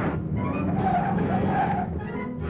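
A car driving fast with its tyres squealing: a wavering screech rises over the engine noise about halfway through.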